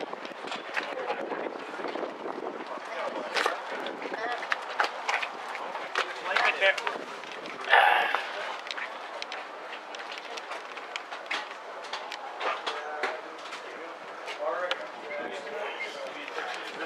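Indistinct voices of people talking in the background, mixed with scattered clicks and knocks from the camera being handled, and one louder short burst of noise about halfway through.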